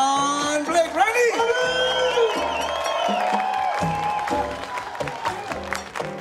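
A Latin jazz band vamping softly under stage introductions, with the audience whooping and cheering.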